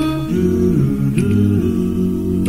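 Doo-wop vocal group's backing harmony: several voices humming held chords that move in steps, over a low bass part.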